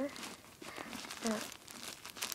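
Plastic wrappers of individually wrapped sanitary pads crinkling as fingers handle and riffle through them.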